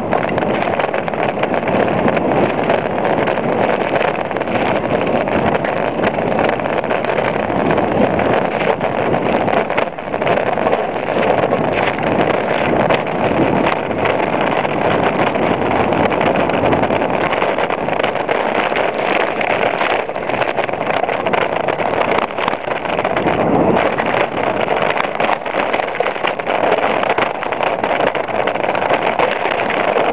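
Downhill mountain bike running fast down a rough dirt trail, heard from a camera mounted on its frame: a steady loud rush of tyre and wind noise with constant rattling and knocking from the chain and suspension over the ground.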